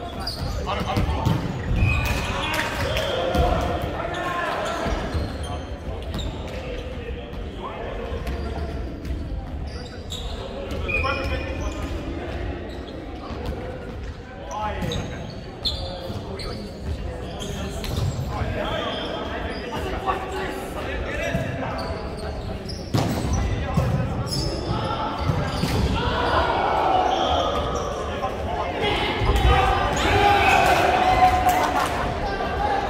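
Volleyball play in an echoing sports hall: repeated thuds of the ball being hit and bouncing on the wooden court, with players' voices calling out.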